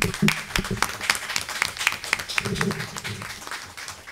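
A roomful of people applauding, with dense hand claps that thin out and fade toward the end, and a few voices under them.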